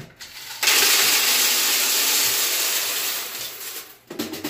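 M&M's candies poured from a plastic jar into the canister of a three-head bulk candy vending machine. It is a steady rush of many small hard pieces falling, starting about half a second in and tapering off near the end as the canister fills.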